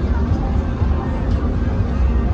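Fairground background noise: a loud, steady low rumble with a faint constant hum and indistinct distant voices.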